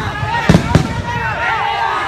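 Firecrackers going off in sharp bangs, two close together about half a second in, amid a crowd shouting and cheering.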